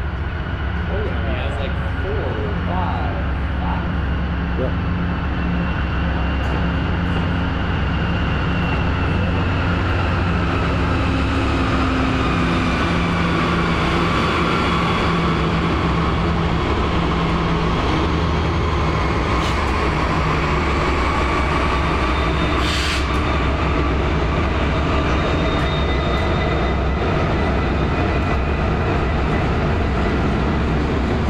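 Several Norfolk Southern diesel-electric freight locomotives passing slowly at close range, their engines running with a steady low drone that grows louder over the first few seconds, with a higher whine above it. A short sharp click about 23 seconds in.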